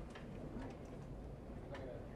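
Quiet room tone with a few scattered sharp clicks, the clearest near the end, and faint voices in the background.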